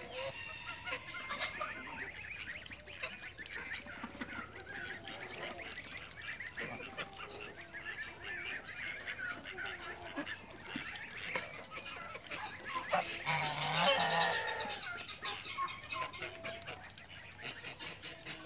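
A flock of Embden geese honking, with many short calls overlapping throughout and a louder burst of honking about three quarters of the way through.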